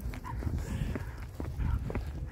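Two leashed Patterdale terriers and their walker moving along an asphalt path: irregular light taps of footsteps and dog claws over a low rumble.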